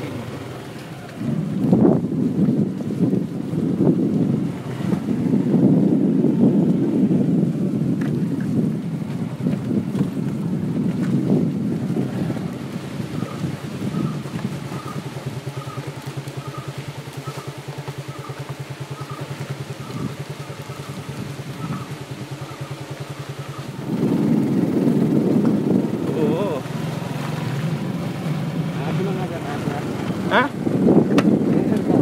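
Rumbling wind and handling noise on a handheld phone microphone, loud and uneven. A faint high chirp repeats about every two-thirds of a second through the middle stretch.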